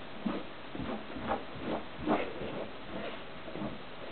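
Border Collie rolling on its back and rubbing itself along a carpet after a bath, making a run of short scuffing, breathy sounds, about two a second, that ease off near the end.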